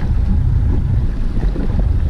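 Wind buffeting the microphone on a small boat at sea: a loud, steady low rumble.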